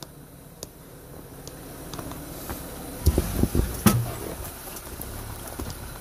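Jeep Wrangler Rubicon idling and crawling at low revs over rock, a low steady engine hum that builds after the first second, with a few heavy thumps and a sharp click about three to four seconds in as the tyres and underbody work against the rocks.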